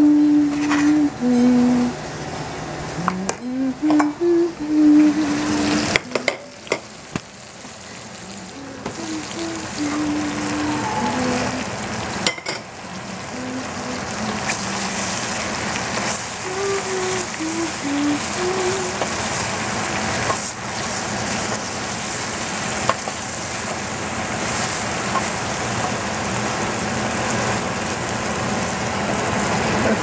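Chopped mushrooms sizzling as they fry in a stainless steel saucepan while being stirred with a spatula. The sizzle builds over the first dozen or so seconds after a few clicks as they go in, then holds steady. A person hums a tune over the first few seconds and faintly again later.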